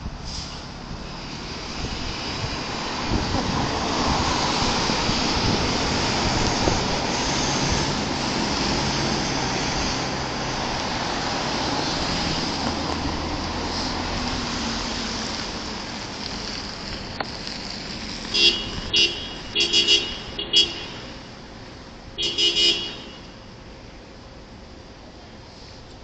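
Street traffic as a city bus and cars drive past close by, swelling and then fading away. Near the end a vehicle horn gives a series of short toots in two bursts.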